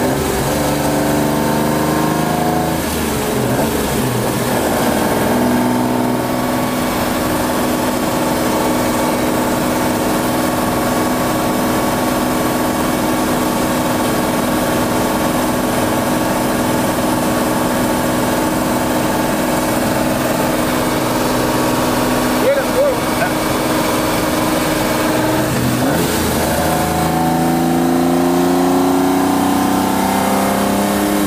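Ferrari 250 GTO's 3.0-litre Colombo V12 heard from inside the cockpit while driving: it pulls up through the revs in the first few seconds, holds a steady cruise through the middle, then accelerates again near the end. Freshly tuned, it runs well but is noisy in the cabin.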